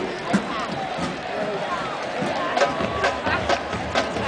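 Crowd noise in a college football stadium: a steady hubbub of spectators' voices with a few sharp knocks, and music rising low underneath near the end.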